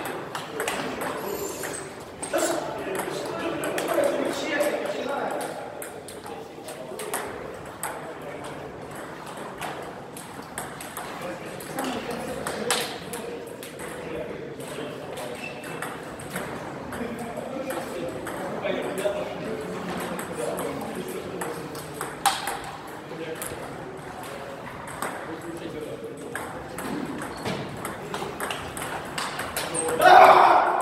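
Table tennis rally: the ball clicking sharply off the players' paddles and bouncing on the table, at an irregular rally pace.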